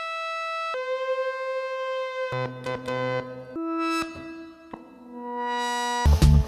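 A Stylophone played one note at a time with its stylus: about five held notes at different pitches, with a deep one in the middle. The notes don't hold a steady pitch and sit noticeably off tune.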